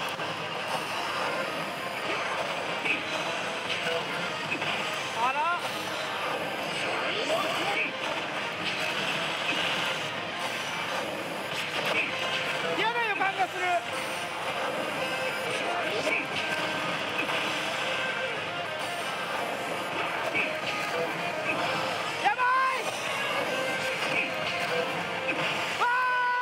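A pachislot machine's battle music and sound effects, with voice-like calls and short pitch sweeps, over the constant din of a pachinko hall.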